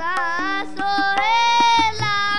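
Shabad kirtan: a high voice sings a melodic line with long held, gliding notes, accompanied by harmonium and regular tabla strokes.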